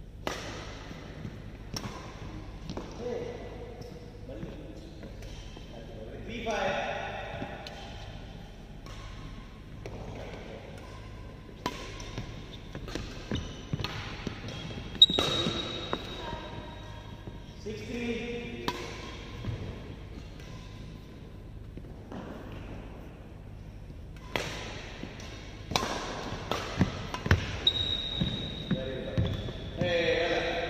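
Badminton rally: sharp, irregular hits of racket strings striking a shuttlecock, coming more often near the end.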